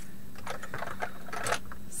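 Light, irregular clicking and clattering of small hard items, such as makeup containers, knocking together as someone rummages for a product.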